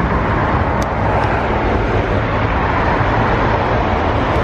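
Steady road traffic noise from a busy city street, a continuous rumble of passing cars.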